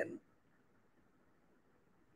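A man's voice finishes a word right at the start, then near silence: a pause in the speech with only faint background hiss.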